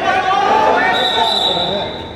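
Voices shouting during a wrestling bout in a large hall, with a short, steady high whistle-like tone starting about a second in and lasting under a second.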